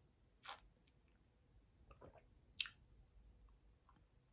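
Faint sipping through a straw from a glass of coffee: two short sharp slurps, about half a second in and again about two seconds later, with a softer one just before the second.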